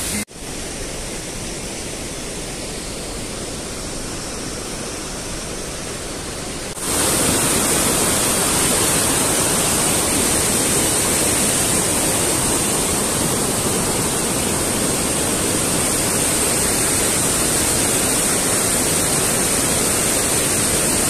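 Mountain stream rushing and cascading over boulders: a steady, even roar of white water. It gets suddenly louder about 7 seconds in and stays there.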